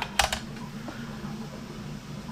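A small 2.5-inch quadcopter is set down on the plastic platform of a digital scale, giving two quick clicks just after the start. A steady low hum follows.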